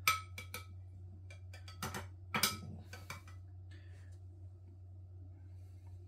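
A large metal serving spoon clinking and knocking against a pan and plate about half a dozen times over the first three seconds as stew sauce is scooped and spooned over the chicken, then a steady low hum.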